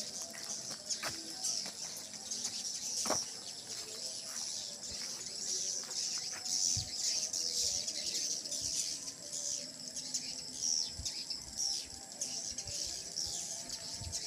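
A large flock of swiftlets twittering continuously with high, thin chirps as they circle over a swiftlet house.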